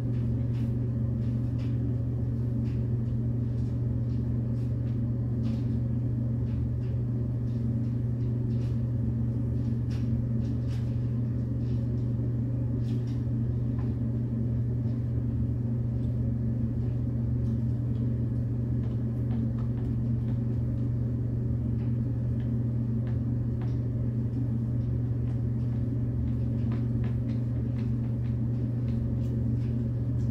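A steady low hum, the loudest sound throughout, with faint scattered clicks of a hand screwdriver driving screws into a board.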